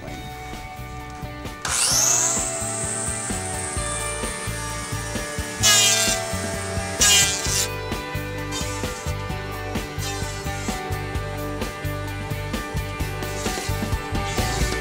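Bosch electric hand planer, its blades rounded to work as a scrub plane on wet plank wood, starting up about two seconds in with a quickly rising whine and then running steadily, with two louder bursts in the middle as it cuts. Background music plays throughout.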